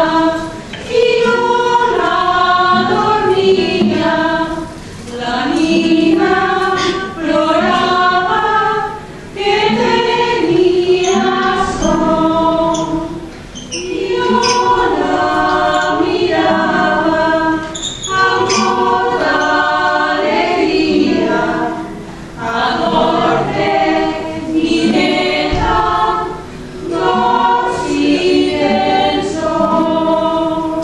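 A small group of voices singing a traditional folk song together, in phrases of a few seconds with short breaks between them.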